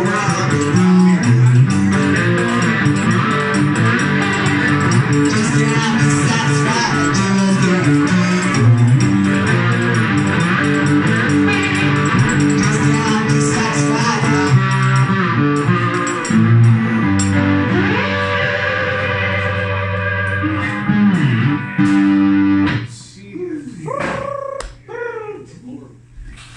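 Live music: a man singing along with a plucked stringed instrument and a second player accompanying him, with a strongly rhythmic picked part. The song stops about 23 seconds in. Scattered, quieter sounds follow.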